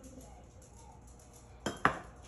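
A metal butter knife set down, landing with two quick clinks near the end.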